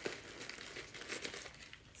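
Packing tissue paper crinkling as it is pulled out from inside a new handbag: a steady run of small crackles.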